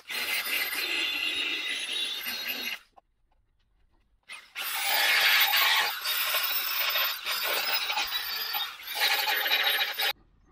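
Narrow belt file sander grinding down the welds on a steel repair patch. It runs for just under three seconds, stops for about a second and a half, then runs again to the end.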